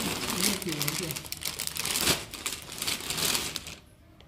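Plastic packaging crinkling and rustling as clothes are pulled out of a bag and handled, stopping just before the end. A brief voice is heard in the first second.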